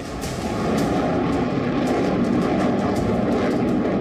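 Military jet aircraft flying over an air show, a steady loud rush of jet engine noise.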